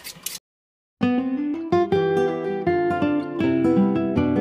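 Background music of plucked acoustic guitar, starting about a second in after a brief dead silence.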